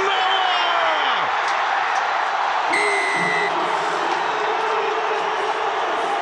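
Rugby stadium crowd cheering continuously as a try is scored, with a short high whistle blast about three seconds in.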